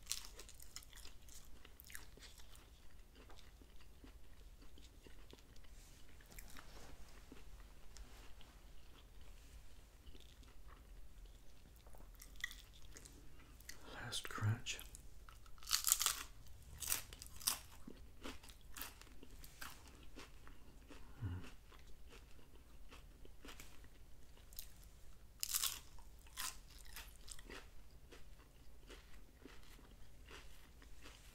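Close-miked biting and chewing of a hard fried corn taco shell: scattered crisp crunches and crackles with quieter mouth sounds between them. The loudest crunches come about halfway through and again a little before the end.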